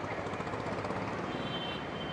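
Busy street traffic: a steady mix of engine and road noise, with a short high-pitched beep near the end.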